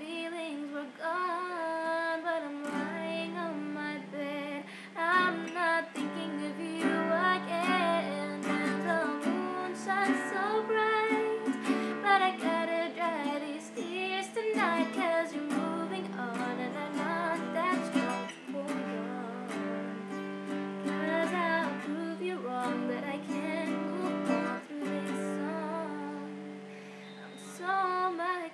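A woman singing with her own strummed acoustic guitar accompaniment.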